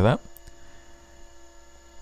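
A spoken word ends, then a faint steady electrical mains hum with no other sound but one faint click.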